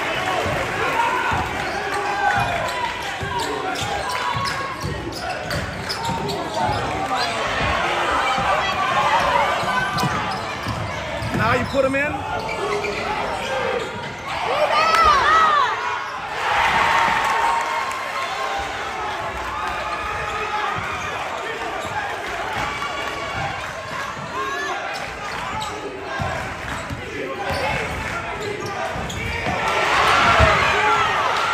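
Basketball being dribbled and bouncing on a hardwood gym floor during play, with indistinct voices of players and spectators around it.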